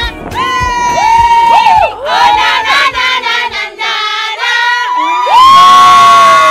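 A group of women cheering and shrieking together in high voices, with a long, loud whoop held from about five seconds in. The song's beat fades away in the first seconds.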